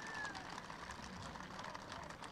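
Faint, distant crowd noise with scattered clapping from a large outdoor audience responding to a call for applause.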